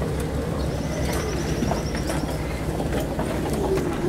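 Off-road vehicle's engine running with a steady low hum, heard from inside the cab on a rough trail. A high, rapid trill sounds in the background for a couple of seconds, starting about half a second in.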